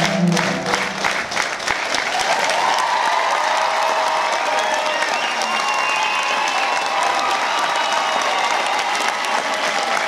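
A piano duet on an upright piano ends with its last chords in the opening moments. Then an audience applauds steadily, with voices calling out over the clapping.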